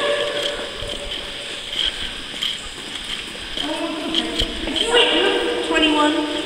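Faint footsteps at a walking pace, then from about halfway in a person's voice making long, drawn-out held tones that have the steady pitch of a call or hum rather than talk.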